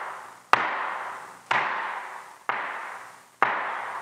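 Flamenco shoes striking a wooden floor, marking time in threes with flat-foot stamps (golpe) and heel strikes (tacón). There are four sharp strikes about a second apart, each ringing on in the room.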